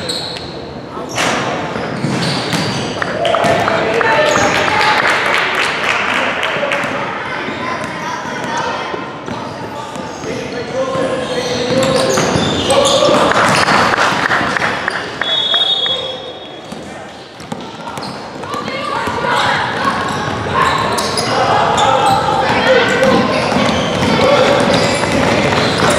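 Basketball game in a gymnasium: the ball bouncing on the hardwood floor, with indistinct shouts and chatter from players and spectators echoing through the hall.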